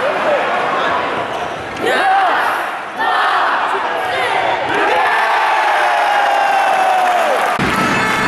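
Crowd noise from a packed indoor volleyball arena during a rally: a constant din of fans with shouts and a long held call, and volleyball hits among it. The sound changes suddenly near the end.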